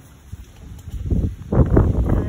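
Wind buffeting the microphone outdoors: low rumbling gusts that start about a second in and grow loud.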